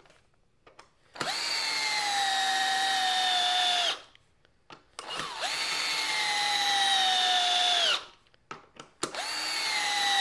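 Blue Ridge 12V cordless drill driving two-and-a-half-inch wood screws into wood. Its motor whine comes in three runs, starting about a second in, about five seconds in and about nine seconds in. In each run the pitch sags slowly as the screw goes deeper and the motor loads, then stops suddenly. A few small clicks fall in the pauses between screws.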